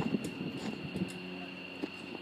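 Truck engines running steadily, a low hum with a constant high whine, with scattered clicks and knocks.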